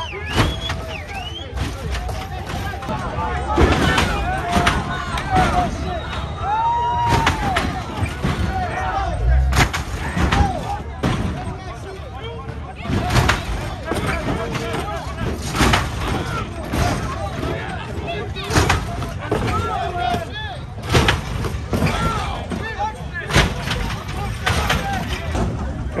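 Hydraulic lowrider cars hopping: repeated loud bangs, about every second or two, as the cars slam down on the pavement, over a crowd shouting and cheering.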